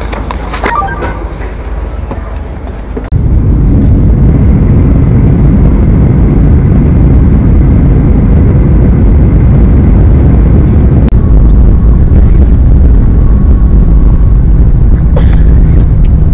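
Jet airliner cabin noise at a window seat beside the engine, in flight at low altitude. The steady low roar of the turbofan and airflow cuts in suddenly and loud about three seconds in, after quieter cabin sounds with a few light clicks.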